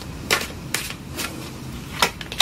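Tarot deck being shuffled by hand: three short card slaps about half a second apart.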